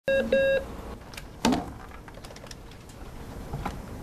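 A desk telephone ringing electronically, with two short beeps right at the start. About a second and a half in comes a sharp clatter, typical of the handset being picked up, followed by a few light clicks.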